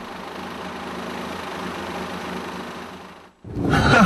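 A steady hum and hiss of engine and road noise fades out. About three and a half seconds in it gives way abruptly to louder engine and road noise inside a moving car.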